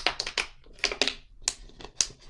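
Thin plastic water bottle crackling in a quick run of sharp, irregular clicks as it flexes in the hand during a drink.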